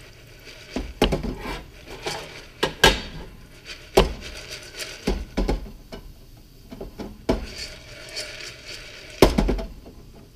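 Metal pot of popcorn kernels shaken and slid about on an electric coil burner: the kernels rattle and the pot knocks and scrapes against the coil in a dozen or so irregular strikes.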